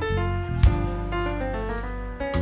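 Live band playing an instrumental passage: sustained bass notes under keyboard chords, with drum kit and cymbal hits, the loudest hit about a third of the way in.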